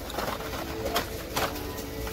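Carded Hot Wheels packages clicking against each other as a hand flips through them on a store peg, a few sharp light clicks spread over the two seconds. Faint steady held tones sit underneath.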